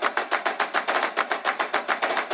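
Intro jingle music: a fast, even percussion roll of about nine strokes a second.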